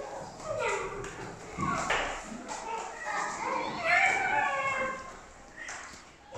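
Children's high voices making wordless, sliding calls in imitation of animals, in a large room.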